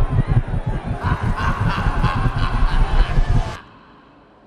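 Noisy party crowd over bass-heavy music, with a loud, repeated honking horn-like sound over it from about a second in. It all cuts off suddenly shortly before the end.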